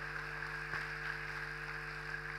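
Steady low electrical hum with faint hiss from the sound system, a quiet stretch between spoken phrases.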